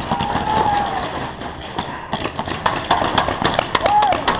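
Paintball markers firing: many irregular sharp pops from several guns at once, with distant voices shouting.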